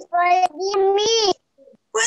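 A high singing voice holding a few notes of a sung greeting, breaking off about one and a half seconds in.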